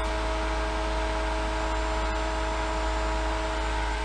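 A 1.5 hp Black + Decker variable-speed pool pump running steadily at 3200 RPM, pushing water through a cartridge filter. It makes an even whir with several held tones over a low hum.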